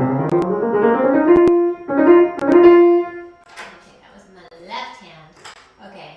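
Grand piano playing a rising run that settles on held notes, stopping about three seconds in. A quiet voice follows.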